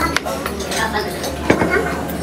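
Cutlery clinking on plates at a table, two sharp clinks: one just after the start and a louder one about a second and a half in, over background chatter.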